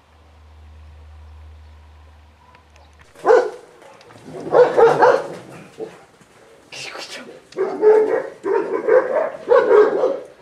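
A Moscow Watchdog puppy barking and yelping in a run of loud calls, starting about three seconds in and coming thick and fast near the end, while it is caught in a wooden picket fence.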